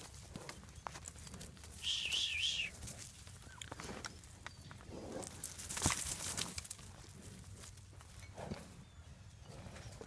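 Calves and a herding dog moving about on dirt, with scattered hoof steps and scuffling. About two seconds in comes a brief, high warbling call, and a sharp knock just before six seconds.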